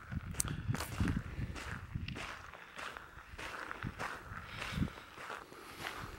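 Footsteps crunching on a gravel driveway at a walking pace.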